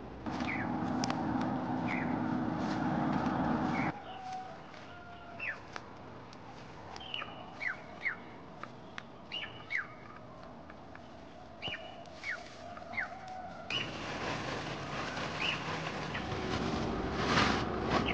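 Small birds chirping: many short calls, each sliding quickly downward, repeated every second or so over a steady outdoor background noise that is louder in the first four seconds and again in the last four.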